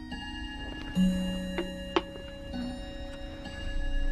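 A clock ticking steadily under a held musical drone, with two sharp clicks about halfway through.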